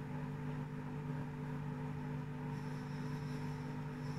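A steady machine hum holding several fixed low tones, unchanging throughout.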